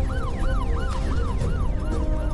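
A yelping siren sound effect in a news intro theme, sweeping up and down in pitch about three times a second, over music with a heavy low bass.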